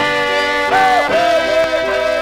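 Old-time polka dance band music from a record: sustained chords with a wavering lead line that slides in above them about a third of the way through.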